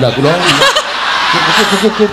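People laughing: a brief burst of voice, then about a second of crowd laughter.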